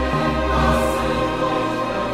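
Sacred oratorio music: a choir and orchestra holding slow, sustained chords, with a deep bass note that fades early on.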